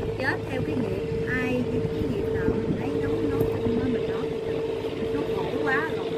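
Steady drone of a boat engine running on the river, holding one even pitch throughout, with indistinct voices talking over it.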